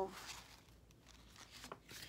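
Faint rustle of paper sheets being handled, with a few small ticks near the end.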